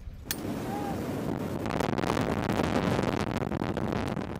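Loud rush of wind buffeting a helmet-mounted camera, with aircraft noise, as a parachutist exits a C-130J Hercules into its slipstream; the rush builds up about a second and a half in.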